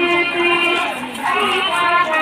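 Music with a high-pitched singing voice, holding a long note in the first part and then moving through gliding phrases.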